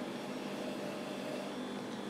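Steady low background hiss with a faint hum: the room tone of a small room, with no distinct event.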